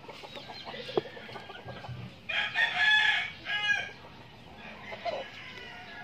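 A rooster crowing once about two seconds in: one drawn-out call with a short break before its last part. A single light tap comes just before it.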